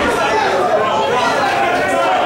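Crowd of boxing spectators talking and shouting over one another, a steady hubbub of many voices in a large hall.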